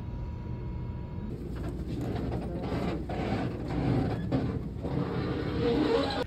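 Steady engine drone inside a boat's passenger cabin, with a thin steady whine. About a second in, it gives way to louder, irregular cabin noise of passengers moving about.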